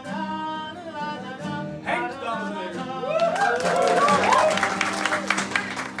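Folk ensemble of fiddles, guitars, button accordion and clarinet playing a tune with voices. About halfway through, this gives way to a louder stretch of hand-clapping and whooping voices.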